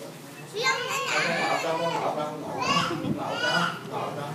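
Young children's voices at play: high-pitched calls and chatter, several overlapping, starting about half a second in.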